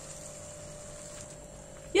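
Hot water poured in a thin steady stream from a pot into a pan of sautéed cabbage and lentils, a soft even splashing that fades near the end.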